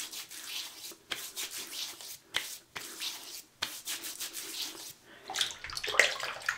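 Wet hands rubbing pre-shave into a stubbled face: a run of quick, repeated rubbing strokes with a few short pauses.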